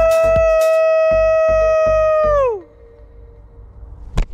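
A man's imitation wolf howl through a cupped hand: one long held note that slides down in pitch and stops about two and a half seconds in.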